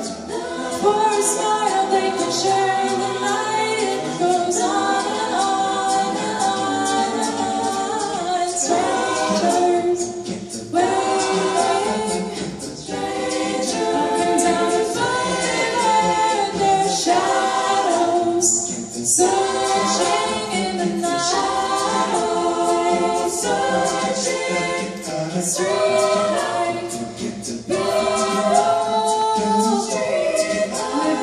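A choir singing a cappella in sustained chords of several voices, with a few short breaks between phrases.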